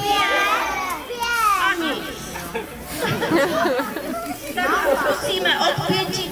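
A group of young children calling out together in high voices, counting aloud in a series of separate shouted calls.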